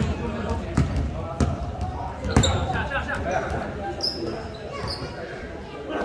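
A basketball bouncing on an indoor court floor, echoing in a large gym: a few dribbles in the first half, the loudest about two and a half seconds in. Sneakers give a couple of short high squeaks on the floor later on.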